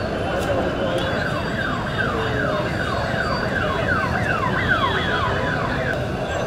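A siren sweeping quickly downward in pitch over and over, about three sweeps a second, starting about a second in and stopping near the end, over a steady background of outdoor noise.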